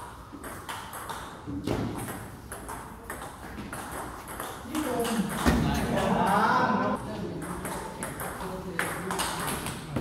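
Table tennis ball clicking off paddles and table in a rally, a run of short sharp taps, with people talking in the hall partway through.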